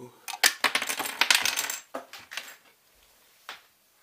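Hard plastic clattering and clicking as the top cover of a Xiaomi Mi robot vacuum is lifted off the body and set down: a dense burst of sharp clicks for about a second and a half, then a couple of lone clicks.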